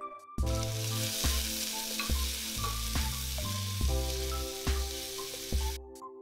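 Chopped onions sizzling as they fry in hot oil with dried red chillies in an aluminium pressure cooker, a steady hiss that starts about half a second in and cuts off just before the end.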